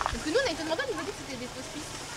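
A short, high-pitched voice from about a third of a second to a second in, with no clear words, over a steady background hiss.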